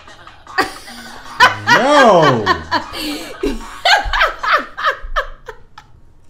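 Loud laughter in short choppy bursts, after a long rising-then-falling vocal cry about a second and a half in.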